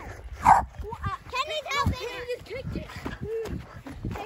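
A dog barking and yipping in short calls, mixed with children's shouts.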